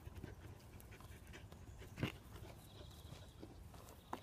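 A dog panting faintly, with one sharp thump of a football about halfway through.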